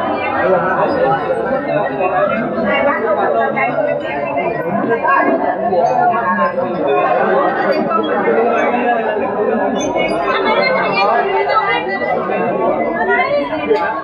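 Many people talking at once in a group: steady, overlapping chatter with no single voice standing out.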